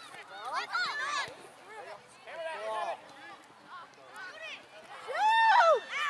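Spectators shouting and calling out from the sideline, several separate calls with the loudest near the end.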